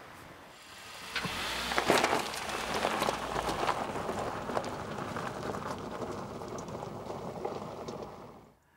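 Second-generation Dacia Duster driving over a loose gravel track: tyres crunching and crackling on the stones over a low engine rumble. It comes in about a second in and slowly fades as the car moves away.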